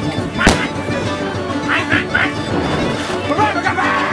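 A single sharp bang about half a second in, a blank-fired cannon shot in a mock sea battle between tall ships, with crew voices around it.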